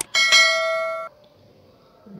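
A mouse-click sound effect, then a bright bell ding lasting about a second that cuts off abruptly: the notification-bell sound of an animated subscribe-button overlay.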